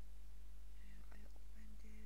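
Faint, quiet speech, almost a whisper, starting about a second in, over a steady low electrical hum.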